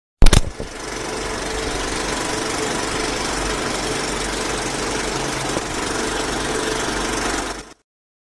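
Film-projector sound effect: a loud sharp hit at the start, then a steady mechanical rattle and hiss with a low hum that cuts off just before the end.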